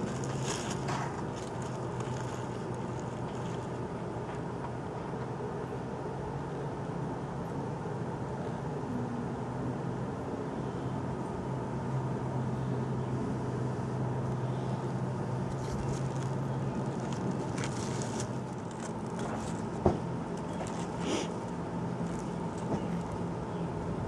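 Steady low background hum and rumble, with a couple of faint short clicks, one about twenty seconds in.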